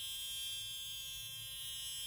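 ProFacial Wand high-frequency skincare wand buzzing steadily while its glowing neon-argon glass electrode is pressed to the skin: a thin, high-pitched electric buzz.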